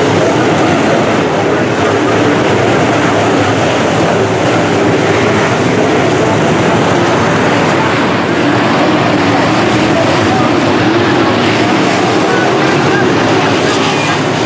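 A pack of dirt-track modified race cars running hard around a dirt oval: many V8 engines blending into one loud, steady drone with no let-up.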